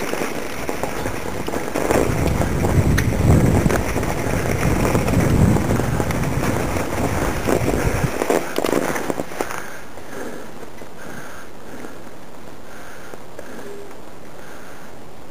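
Rumbling, rubbing noise from a handheld camera's microphone as it follows a mountain bike over snow, with many sharp crackles. It is heaviest in the first eight seconds, then drops to a steady, quieter hiss about nine and a half seconds in.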